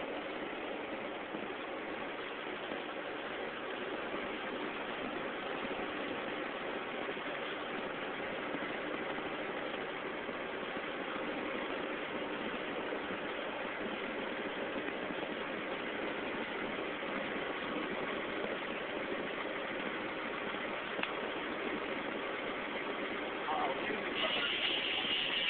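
Steady engine and road noise inside a truck cab driving at highway speed.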